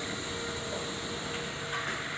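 Steady mechanical running noise of a salt-canister packaging line, with a faint steady hum tone that stops near the end.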